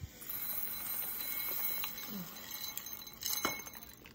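Tiny hard candy pieces sliding off a plate and pattering into a plastic bowl, a steady rattle with a few sharper clicks about three and a half seconds in.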